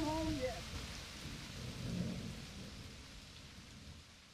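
A man's voice says "oh yeah" at the start over a noisy wash like rain, with a low rumble about two seconds in; the wash fades away toward the end as the track closes.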